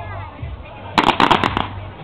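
Army rifles fired from the prone position: a rapid string of about six sharp shots about a second in, lasting half a second.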